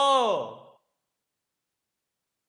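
A man's drawn-out "aiyo" of dismay, falling in pitch and dying away within the first second, followed by silence.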